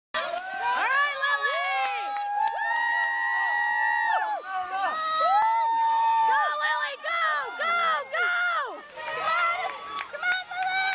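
A crowd of spectators cheering and shouting encouragement to a swimmer. Many high voices overlap, with long drawn-out calls held for a second or more.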